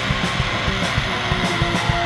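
Stoner/doom metal recording: a distorted electric guitar riff over bass and drums, with repeated drum hits and cymbal strikes.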